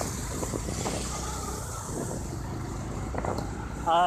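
Honda Twister motorcycle's small single-cylinder engine running as the bike rides along, mixed with steady wind and road noise on the microphone. A voice starts right at the end.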